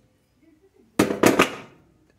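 Metal gas-stove burner cap set down onto the burner base, a quick rattle of four or five clinks about a second in.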